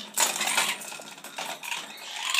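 Toys clinking and rattling against a wire bird cage as a dusky lorikeet tosses them about: a string of quick clicks, with the sharpest clatter just after the start.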